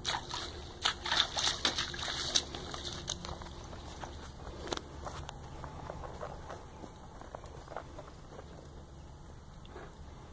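A Quarter Horse's hooves splashing and squelching through a muddy puddle at a walk, loudest and busiest in the first three seconds. After that come softer, scattered hoofsteps in the wet dirt.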